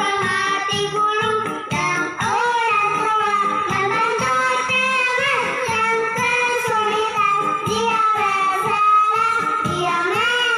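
Music with a child's singing voice, played through the small speaker of a Smart Hafiz children's learning toy fitted with a corded toy microphone. The sung melody runs on without a break over a steady low beat.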